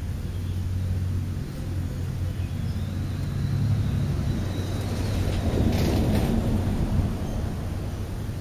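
A car driving past on the road, its noise swelling to a peak about six seconds in and fading, over a steady low rumble.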